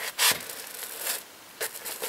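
A paperback workshop manual sliding and being handled on a wooden workbench: a few short rubbing swishes of paper on wood, the loudest near the start.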